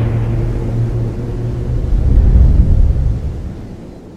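Cinematic logo-intro sound design: a deep low rumble that swells about two and a half seconds in and then fades away, the tail of a booming hit.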